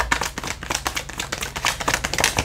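A deck of tarot cards being shuffled by hand: a quick, uneven run of card clicks and flicks.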